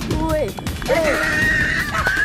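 Short shouted cries, then a long, high, wavering cry from about a second in, over background music.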